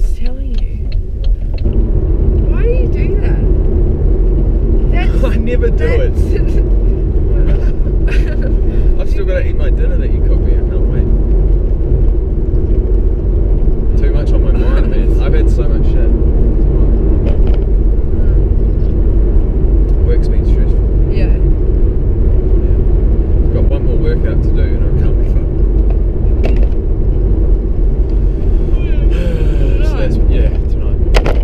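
Steady engine and road rumble heard inside a moving car, with indistinct voices over it.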